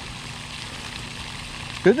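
Steady hiss of water from a pond aerating fountain, its spray falling back onto the pond surface. A man's voice starts near the end.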